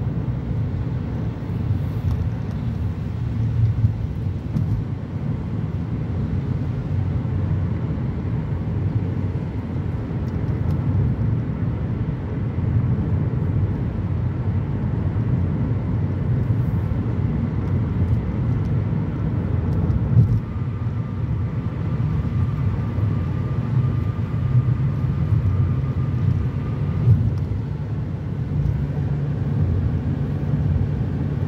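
Steady low rumble of a car driving on a wet highway, heard from inside the cabin: tyre and road noise.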